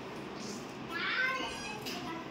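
A child's voice calling out briefly about a second in, over a faint steady room background.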